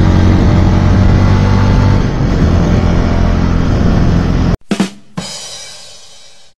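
Zontes V1 350 motorcycle running steadily at road speed; the sound cuts off suddenly about four and a half seconds in. Two sharp percussive hits follow about half a second apart, the second fading away.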